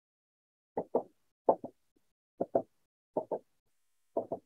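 A marker tapping dots onto a whiteboard, in quick pairs about three quarters of a second apart, four pairs in all. These are the lone-pair electrons being dotted into a Lewis structure.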